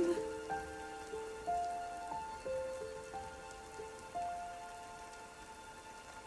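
Soft orchestral accompaniment holding quiet sustained chords that change pitch every second or so, over a steady hiss of falling rain.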